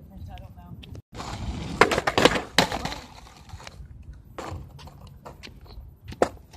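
Skateboard on a concrete sidewalk: the wheels rolling over the pavement and the board clacking down on it several times, loudest with three sharp knocks about two seconds in and a few weaker ones later.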